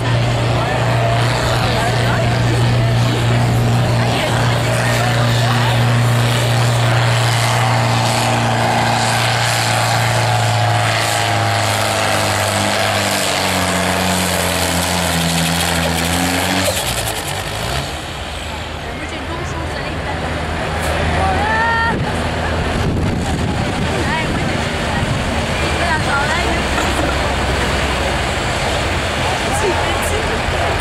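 John Deere 1640 tractor engine running hard at full throttle while pulling a weight-transfer sled. The engine note holds steady, then sags lower in pitch over several seconds as the sled bogs it down, and cuts off about halfway through. A rougher engine rumble follows.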